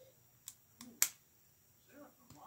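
LEGO plastic pieces clicking as they are pressed together by hand: three short sharp clicks, the loudest just over a second in.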